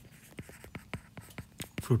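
A stylus tip tapping and scratching on a tablet's glass screen while handwriting a word: a quick run of light clicks, about six a second.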